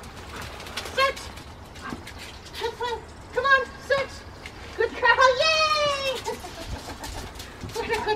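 A woman's high-pitched calls, not clear words: a few short ones, then one long call falling in pitch about five seconds in.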